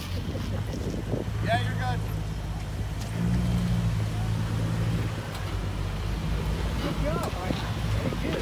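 Jeep Wrangler engine running at low revs while crawling over rock, a steady low hum that grows louder about three seconds in and eases off around five seconds.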